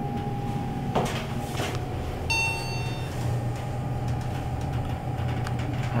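Montgomery hydraulic elevator car: a steady low hum throughout, a click about a second in, and a short ringing chime a little over two seconds in.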